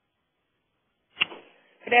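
Silence, then a single short click-like sound a little over a second in, then a voice starting to speak ("Good…") right at the end.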